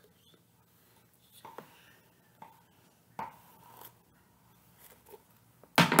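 Soft, scattered handling noises, a few brief scrapes and rustles of hands and small objects, with a louder knock near the end.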